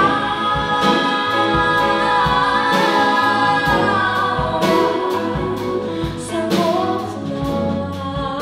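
Live pop band: several voices sing held harmony lines with vibrato over keyboard, bass and drums, with cymbal strikes every second or two.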